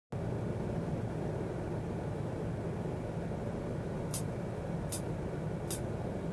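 Steady low background rumble, with three short, sharp ticks evenly spaced about 0.8 s apart near the end, a count-in to a karaoke backing track.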